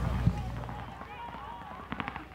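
Closing music fades out in the first second, leaving outdoor ambience of distant, indistinct voices, with a brief cluster of sharp clicks near the end.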